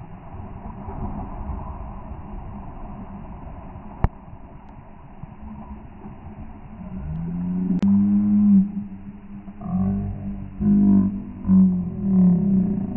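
Pool water sloshing around a swimming dog, slowed down into a low rumble, with a sharp click about four seconds in. In the second half a run of low, drawn-out pitched tones comes in, several notes in a row.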